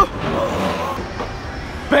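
Steady background noise with faint voices, opening with a sharp knock; a man calls out a name near the end.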